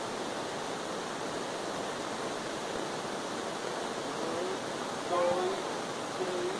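Steady rushing noise throughout, with a brief voice sound, not words, about four to five seconds in.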